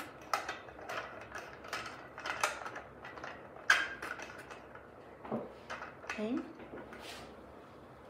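Irregular small clicks, taps and scrapes of a square metal drive rod being slid through the plastic drums inside an aluminium shade headrail. The sharpest click comes a little under four seconds in.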